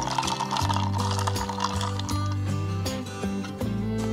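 Background instrumental music with a steady bass line. A light clinking, fizzing texture sits on top of it over the first couple of seconds.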